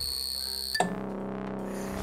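Sustained electric tones, one for each word of a neon sign as it lights in turn: a high, thin tone gives way about a second in to a lower, fuller one, each switch marked by a quick upward slide.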